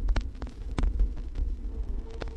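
Vinyl LP running in its lead-in groove before the music starts: a low rumble with scattered clicks and pops of surface noise.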